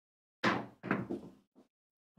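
A pair of dice thrown onto a craps table: a sharp knock as they land about half a second in, a second knock as they bounce into the back wall, and a small last tap as they settle.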